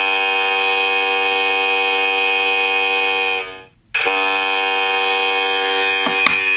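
Hockey goal horn from a desktop goal light sounding in a long, steady blast that cuts off about three and a half seconds in. After a short break a second blast starts.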